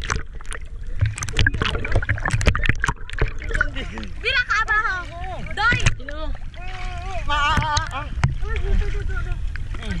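Sea water splashing and sloshing around an action camera as it dips under the surface and back up, with many short splash clicks and a steady low water rumble. High-pitched voices call out at times, about halfway through and again near the end.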